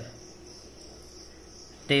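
A faint steady high-pitched whine over quiet room tone, with the tail of a man's word at the very start.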